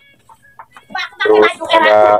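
A chicken clucking: a few faint short clucks, then a louder drawn-out call in the second half.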